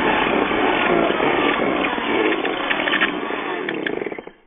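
Corded electric drill running, spinning a dryer-vent cleaning brush on a flexible rod. It runs steadily, then starts to wind down near the end with a few clicks.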